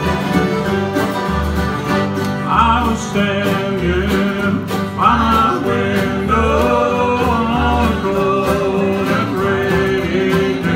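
A live string band playing country-bluegrass music, with guitar to the fore, other plucked and bowed strings, and a steady bass line.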